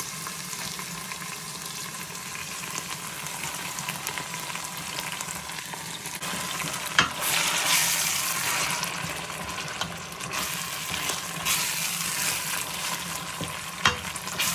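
Onions and ginger-garlic paste sizzling steadily in hot rapeseed oil in a stainless steel pot. About seven seconds in there is a knock and the sizzle grows louder as the blended scotch bonnet paste goes in and is stirred with a spatula, with another surge near the end.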